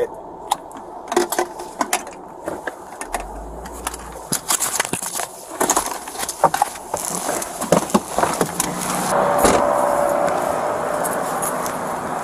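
Short clicks and knocks of a police officer handling controls and gear in the driver's seat of a parked Ford patrol car and getting out. About eight seconds in, the sound opens up into the louder, steady noise of road traffic outdoors.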